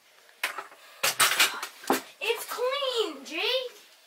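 A child's voice making a drawn-out, wordless sing-song sound whose pitch rises, dips and rises again. A few sharp knocks and clatter come just before it.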